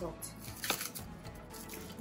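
Flaky sea salt crumbled between fingers and sprinkled onto sticky caramel-coated almonds on a plate, a light crackling rustle, over background music.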